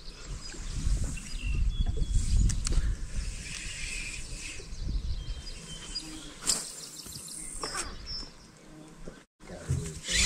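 Outdoor wind rumble on the microphone, heavier in the first half, with a few short, high bird chirps and a couple of sharp clicks from handling the rod and reel.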